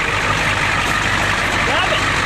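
Ford pickup truck's engine running steadily, freshly restarted after water was cleared from its fuel.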